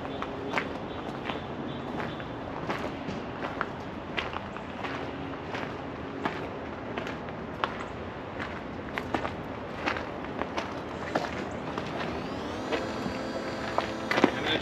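Footsteps on gravel at a slow walking pace, over a steady background noise. A faint rising tone comes in near the end.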